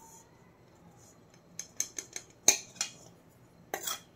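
Metal pan clinking and scraping against a stainless steel plate as powdered sugar is tipped and tapped out of it. The taps start about a second and a half in, come as a scattering of sharp clicks, and are loudest about halfway through.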